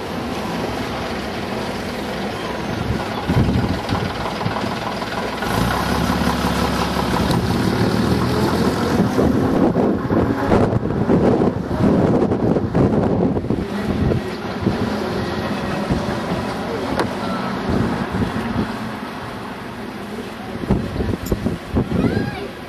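Engines running with wind on the microphone; the engine noise grows louder near the middle and then eases off.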